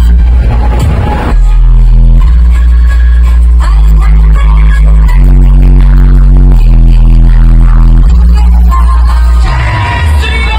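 Electronic dance music played very loud through a large outdoor DJ speaker tower, dominated by a heavy bass line that steps between sustained notes.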